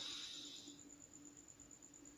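Near silence: quiet room tone with a faint steady low hum. A soft hiss fades out within the first half second.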